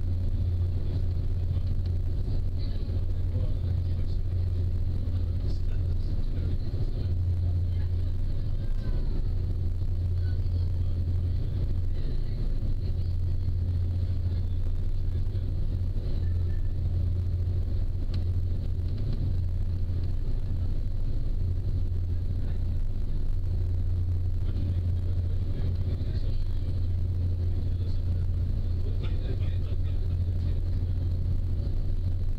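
Passenger ferry's engines running at a steady cruise, a constant low drone with a haze of water and wind noise over it.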